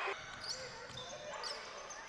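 Game sounds from a hardwood basketball court: a ball bouncing, and a couple of short, high sneaker squeaks about half a second and a second and a half in, over faint gym ambience.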